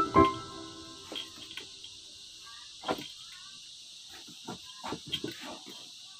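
A few sharp clicks and knocks from hand upholstery work on a sofa seat, as a tool is worked into the fabric: one stronger knock about three seconds in and a quick cluster near the end. Background music cuts off right at the start, and faint bird chirps come through between the knocks.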